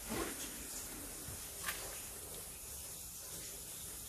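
Steady hiss of water spraying from a burst water-supply pipe that cannot be shut off, with a couple of faint clicks.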